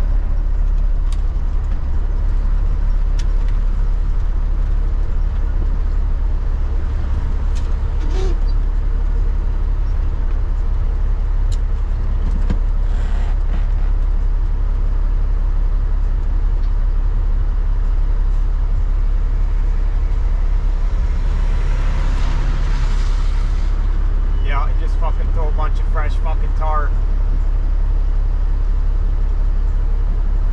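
Cabover semi truck's diesel engine running with a steady low drone, heard from inside the cab as the truck rolls slowly to a stop. A short hiss of noise a little past the middle and a brief voice near the end.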